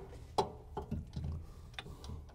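A few light metallic clicks and knocks, about four in two seconds, as a steel brake pedal arm is handled and fitted against its pedal bracket.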